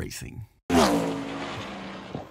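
Race car sound effect for a logo intro: a short hit, a brief cut to silence, then a pitched engine-like note that falls quickly and holds steady.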